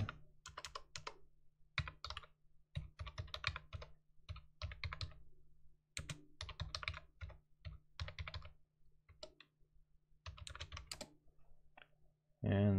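Computer keyboard being typed on: several short bursts of key clicks with brief pauses between them, faint.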